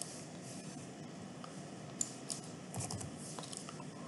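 A few faint computer keyboard keystrokes, scattered light clicks mostly from about two seconds in, over a low steady room hum.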